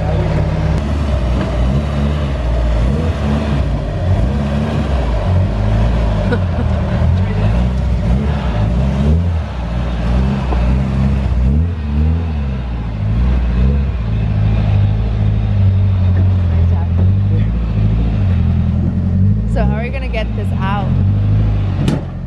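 Nissan 240SX engine running at low speed, its revs rising and falling in repeated throttle blips as the car creeps up ramps into an enclosed trailer.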